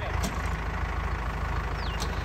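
A JCB backhoe loader's diesel engine idling steadily, with a short high falling chirp near the end.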